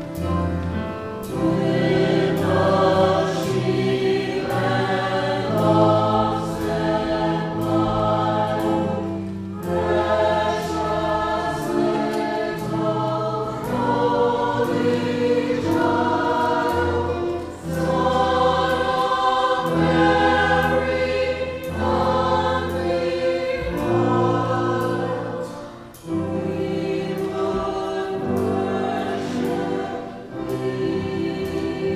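A mixed church choir sings in parts with instrumental accompaniment. Long low notes sit under the voices, and a steady beat runs beneath, with brief dips in loudness about two-thirds of the way through and again near the end.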